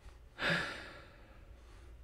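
A man's breathy sigh, a single exhale about half a second in that fades away within about half a second.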